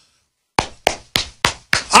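A slow run of about six hand claps, evenly spaced at roughly three a second, starting about half a second in after a brief silence: a sarcastic slow clap.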